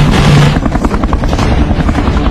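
Helicopter rotor beating in a rapid, even chop over a heavy low rumble, after a loud rush of noise in the first half second.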